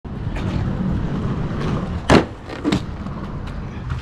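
Inline skate wheels rolling with a steady low rumble over rough asphalt. Two sharp knocks come about two seconds in and half a second later, the first the louder.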